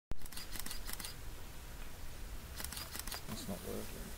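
Camera shutters clicking in short runs: about four clicks in the first second, then a few more near the three-second mark.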